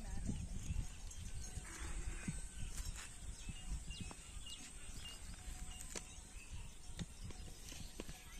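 Outdoor ambience: a low rumble of wind on the microphone, with a few faint sharp clicks and short faint high calls.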